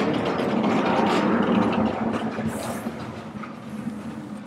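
Vertically sliding chalkboard panels pushed by hand, rumbling along their tracks as they pass each other. A steady rolling noise with a low hum fades away over the second half.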